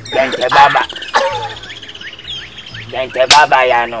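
A man's loud wordless vocal cries and exclamations in short bursts, with a steady high chirping behind them and a sharp click about three seconds in.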